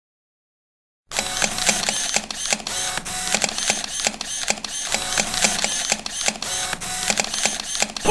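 Several press photographers' SLR camera shutters clicking rapidly and overlapping, starting about a second in.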